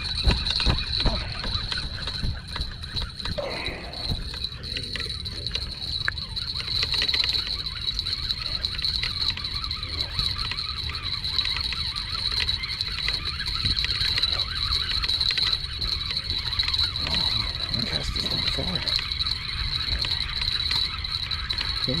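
Wind rumbling on the microphone with water splashing softly, under a steady high-pitched hum.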